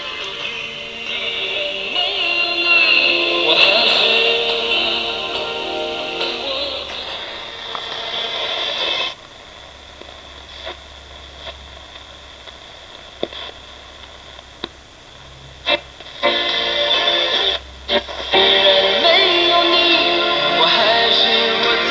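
1949 Radio Industrija Nikola Tesla Kosmaj 49-11 four-valve superhet radio playing a music broadcast through its speaker. About nine seconds in the music cuts off to a quieter stretch with scattered clicks and crackles as the dial is tuned between stations. Music from another station comes back in about four seconds before the end.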